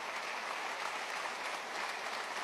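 A roomful of people applauding steadily.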